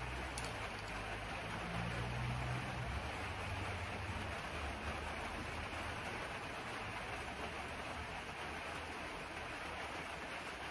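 Steady rain, heard as an even hiss, with a low rumble beneath it for the first half.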